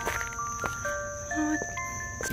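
Insects outdoors giving one steady high-pitched drone, under soft background music of held notes that change pitch.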